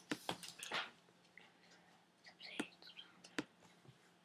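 Several sharp, irregularly spaced computer mouse clicks: a cluster in the first second, then single clicks later. These are anchor points being placed with Photoshop's pen tool, with soft whispering between them.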